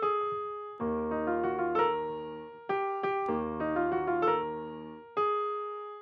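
Software piano in FL Studio playing a slow, dark melody: a single note fades at first, then two low chords with a deep bass and higher melody notes over them ring out, and another single note sounds near the end.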